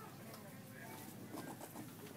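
Faint voices with a quiet background hum, and light handling of a cardboard bicycle box being lowered into a shopping cart.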